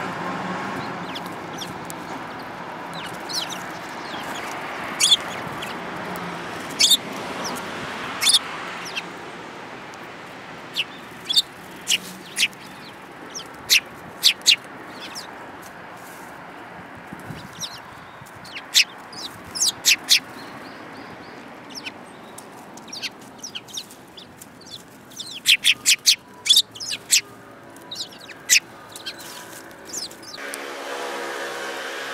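Eurasian tree sparrows giving short, sharp chirps, scattered singly and in pairs, with a quick run of several about three-quarters of the way through.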